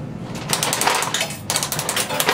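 Chrome coin mechanism of a candy vending machine being turned by hand: rapid ratcheting clicks, densest in two runs about half a second and a second and a half in.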